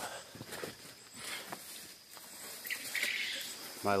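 Outdoor ambience with a steady, high-pitched insect trill, plus a few faint knocks and rustles and a short brushing noise about three seconds in.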